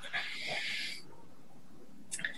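A faint, brief hiss of noise lasting about a second near the start, picked up on a video-call microphone, followed by low room tone.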